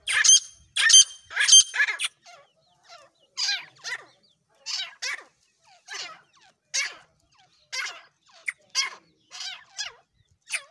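Caged grey francolins calling. There are loud, harsh calls in the first two seconds, then a steady run of shorter repeated calls, about one a second.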